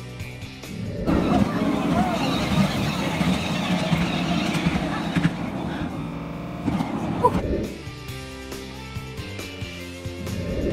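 Background music, broken for about five seconds in the middle by the running noise of a miniature ride-on train with indistinct voices, before the music returns.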